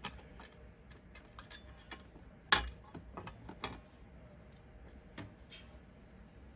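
Small metallic clicks and ticks as a screwdriver unscrews the screw holding a Husqvarna Automower blade to its metal blade disc, with one sharper clink about two and a half seconds in.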